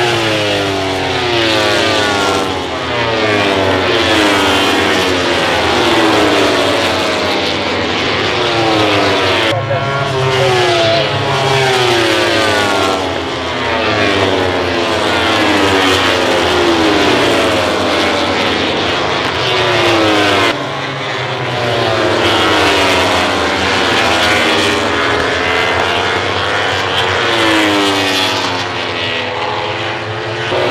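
MotoGP racing motorcycles' 1000 cc four-cylinder four-stroke engines at high revs, bike after bike passing close by, the pitch of each dropping as it goes past. The sound changes abruptly twice, about ten and twenty seconds in.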